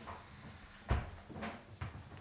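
A dull thud about a second in, followed by two lighter knocks: things set down on a wooden kitchen table and a chair moved as someone sits down at it.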